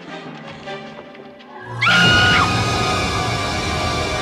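Horror soundtrack music: quiet and low at first, then a sudden loud sting about two seconds in with a short high note at its start, running on loud and sustained.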